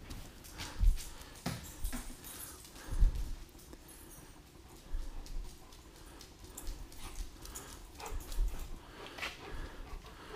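A German Shepherd dog running about on a concrete shop floor during a game of fetch: irregular footfalls and soft knocks, the loudest about a second in and about three seconds in.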